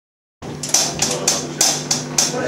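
Live rock band playing, cutting in about half a second in: bright cymbal strokes about three a second over a held low guitar note.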